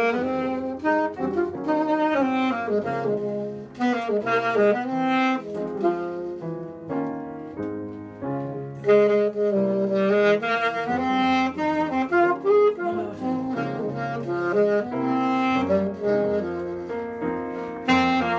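Live jazz from an alto saxophone playing a flowing melody over piano accompaniment.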